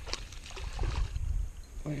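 Low rumble of wind and handling noise on the microphone, with faint ticks from a spinning reel being cranked as a hooked bass is reeled in.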